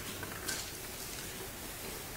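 Quiet room tone with a steady low hum and one faint click about half a second in.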